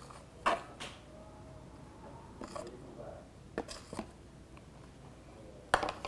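A few light knocks and clinks of a plastic tub and kitchen utensils against a blender jar as ingredients are tipped in, the loudest just before the end.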